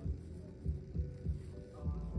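Quiet background music: a soft, low-pitched ambient bed with a few dull low pulses, under a pause in the talking.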